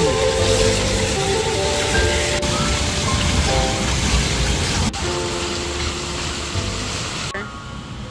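Water spilling over the rim of a stone fountain basin and splashing into the pool below, a steady rushing hiss, with piano music over it; the water sound cuts off near the end, leaving the music.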